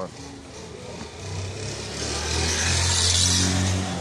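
A motor vehicle going past: engine hum and road noise build up from about a second in and are loudest near the end.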